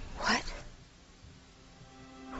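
A young woman's single short, startled exclamation, "What?!", rising in pitch about a quarter of a second in. It is followed by a hush in which faint background music comes in.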